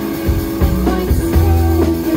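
Live rock band playing: electric guitars over bass guitar and a drum kit, the chords ringing on steadily.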